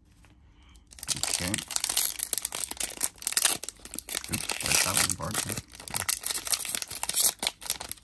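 Shiny foil wrapper of a Zenith football card pack being torn open and crinkled by hand, a dense crackling that starts about a second in.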